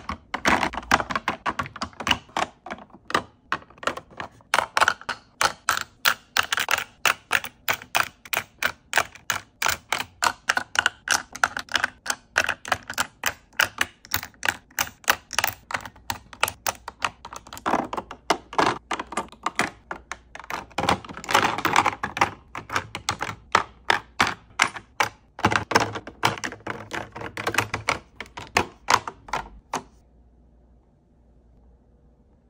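Plastic makeup tubes and lip-gloss bottles clicking and tapping against clear acrylic drawer-organizer bins as they are set in one by one: a quick, uneven run of close-up clicks and light clatters, a few each second.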